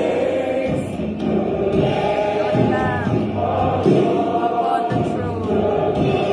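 Worship music playing, with a choir singing sustained, gliding notes.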